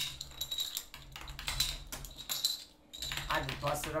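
Plastic Connect Four checkers clicking against each other as they are handled, a quick irregular run of light clicks, with a voice coming in near the end.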